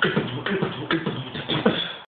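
Human beatboxing: sharp drum-like mouth strokes about every half second, with a hummed bass tone between them.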